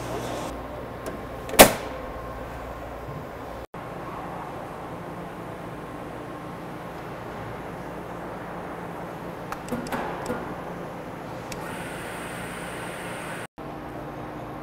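A metal electrical enclosure door on an overhead crane shut with one sharp, loud bang about one and a half seconds in. Then a steady machinery hum with a few faint knocks.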